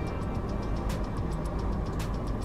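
Car engine idling steadily, heard from inside the cabin, with quiet music carrying a light ticking beat over it.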